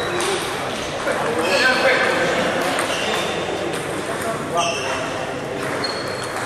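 Table tennis ball being struck by rubber bats and bouncing on the table in a rally, a series of sharp pings echoing in a large sports hall, with more ball pings from other tables and voices in the background.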